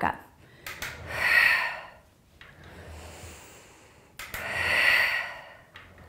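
A woman's heavy, audible breathing while exercising: two long breathy exhales, one about a second in and one about four to five seconds in, with a fainter inhale between them.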